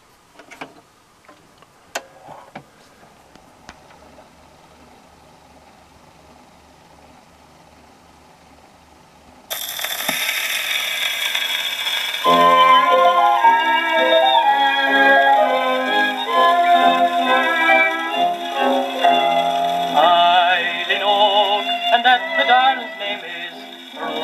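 A few clicks as the soundbox of an HMV 102 wind-up gramophone is handled over the record. About ten seconds in, the needle drops into the groove of a 10-inch Columbia 78 rpm shellac record with a sudden hiss of surface noise. A couple of seconds later the recording's instrumental introduction of violin, cello and piano starts playing through the gramophone.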